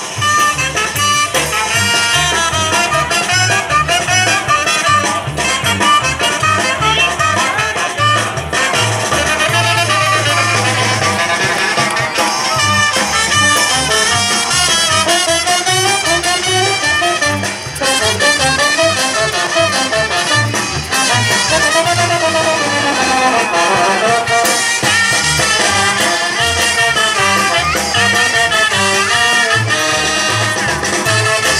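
Brass band music with trumpets and trombones over a steady, regular drum beat, a lively Latin dance rhythm that carries on throughout.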